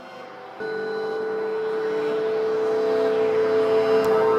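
A steady drone with a rushing, vehicle-like noise, added to the soundtrack, starting about half a second in and swelling steadily louder as a build-up into the next music track.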